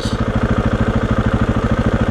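KTM 690's single-cylinder engine running at low revs as the bike rolls slowly, an even rapid beat of exhaust pulses.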